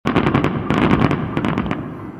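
Fireworks crackling: a dense, fast run of sharp pops and crackles that thins out and fades near the end.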